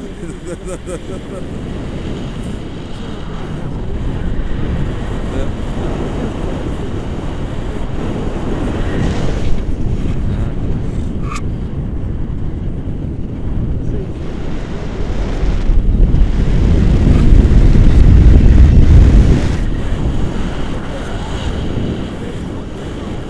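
Airflow rushing over the camera microphone of a paraglider in flight, a loud low rumble that builds as the glider banks into turns and is loudest for a few seconds near the end.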